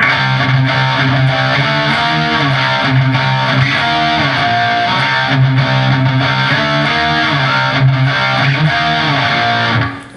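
Distorted electric guitar playing a driving rock riff at full speed over a steady low C, with higher notes moving above it; it starts and stops abruptly.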